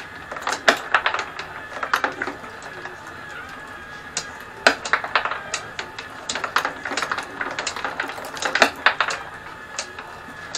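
Marbles clicking and clattering as they roll along the wooden tracks and lifts of a homemade marble machine, in three bursts of rapid clacks, over the steady whine of a small electric motor driving the lift.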